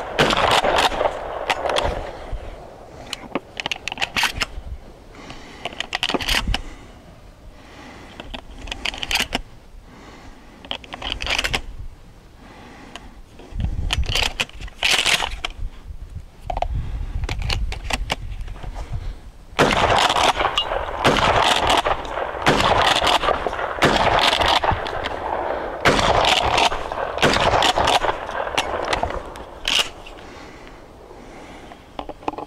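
12-gauge shotgun firing buckshot, repeated shots at irregular intervals with quieter gaps between, coming closer together in the second half.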